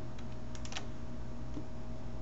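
A short cluster of light plastic clicks at a computer, bunched about half a second in, over a steady electrical hum and hiss from the recording.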